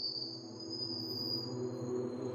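Eerie sustained suspense drone: two high, steady ringing tones that fade out near the end over a low, held hum that slowly grows louder.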